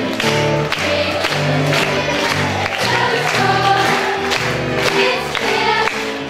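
A large stage chorus singing a lively show tune together with musical accompaniment, over a steady clapped beat.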